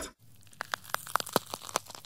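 Edited-in sound effect: the tail of a falling whoosh, then an irregular run of about a dozen sharp, crackling clicks starting about half a second in, over a faint hum.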